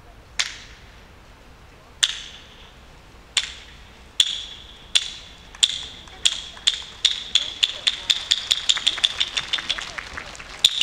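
Hyoshigi, a pair of hardwood clappers, struck in the kabuki way: single sharp, ringing clacks, at first well over a second apart, then quickening into a rapid run near the end. In kabuki this accelerating run signals that the curtain is opening.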